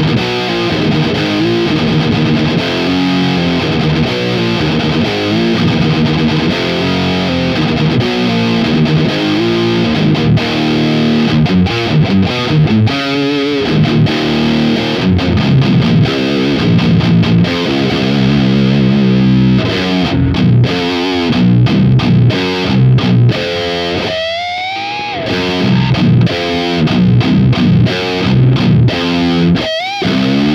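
Heavily distorted seven-string electric guitar, tuned down to B-flat standard, played through a Hotone Mojo Attack pedalboard amp: low, chugging death-metal riffs in a swampy, sludgy tone with the mids cut and the bass boosted. Near the end there are sliding notes.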